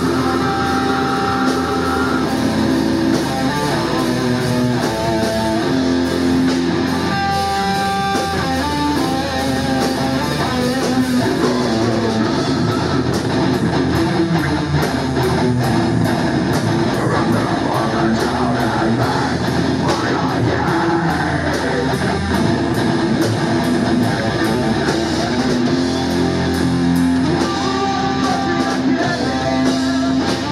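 Live heavy metal band playing: distorted electric guitars, bass guitar and drum kit, with a fast, even drum beat through the middle of the passage.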